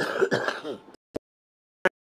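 A woman clearing her throat for about the first second, cut off suddenly into silence, followed by two short clicks.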